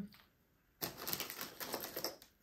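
Small hard objects clicking and rattling as they are rummaged through by hand, a quick run of clicks starting about a second in.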